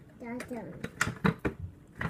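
A few sharp knocks and crinkles, about a quarter-second apart, as beets are handled and set down in a disposable aluminium foil roasting pan.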